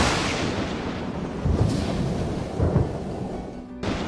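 Channel logo sting: a dense rushing, thunder-like sound effect with two deep booms, about one and a half and nearly three seconds in, mixed with music, and a fresh burst just before the end.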